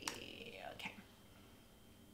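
One sharp click at the computer as the font name is entered, followed by soft whispered mumbling for under a second, then quiet room tone.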